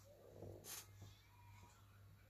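Near silence: a steady low hum, with one brief faint rustle about three-quarters of a second in.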